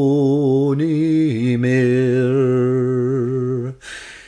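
A man singing a Scots traditional ballad unaccompanied, drawing out long held notes with a slow vibrato. The pitch steps down about a second in, and the held note stops just before the end.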